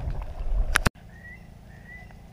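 A low rumble that cuts off with a sharp click a little under a second in. After it, over a quiet background, a bird gives two short whistled calls, each rising slightly.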